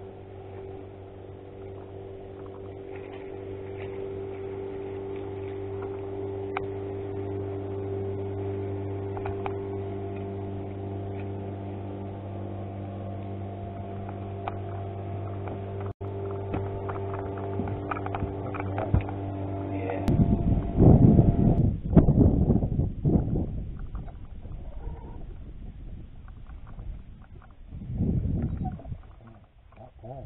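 Electric trolling motor humming steadily, slowly growing louder. About two-thirds of the way through, the hum cuts off abruptly and loud, irregular bumps and buffeting follow.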